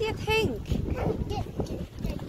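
High-pitched voices calling out in short, rising and falling sounds, over wind rumbling on the microphone.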